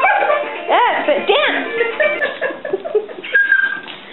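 Alaskan malamute singing along to a children's music toy: two short rising-and-falling woo calls about a second in, over the toy's tune, which fades out partway through.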